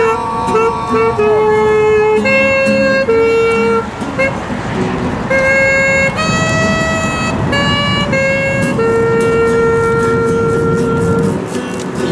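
A saxophone playing a slow melody of held notes, ending on one long note held for about two seconds.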